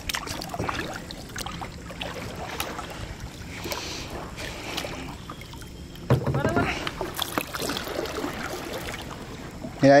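Kayak being paddled through flooded woodland: paddle strokes in the water with scattered sharp knocks. A voice is heard briefly about six seconds in.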